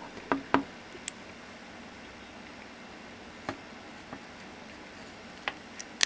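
A few scattered small clicks and taps of metal parts as a Singer sewing machine's safety clutch is fitted back onto its lower shaft by hand.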